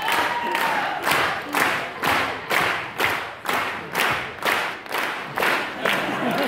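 Large theatre audience clapping together in a steady rhythm, about two claps a second, over a background of crowd noise.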